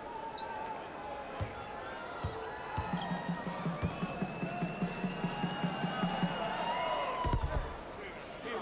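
Basketball arena crowd noise with music playing, a steady beat with held tones through the middle, and a low thud near the end.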